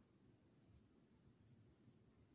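Near silence, with faint soft brushing of a wet watercolor brush on paper and a few tiny ticks.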